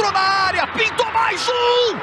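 A man's voice calling the football play in Portuguese, with one drawn-out syllable near the end.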